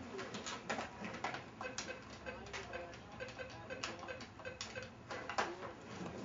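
Handling of a corded telephone while its coiled cord is untangled: scattered light clicks and knocks of plastic.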